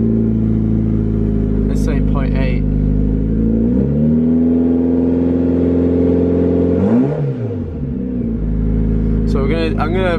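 Mitsubishi Lancer Evolution's turbocharged four-cylinder engine idling, then revved once about four seconds in: the pitch rises, holds for about three seconds, and falls back to idle.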